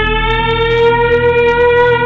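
Shofar blown in one long held note, its pitch rising slowly.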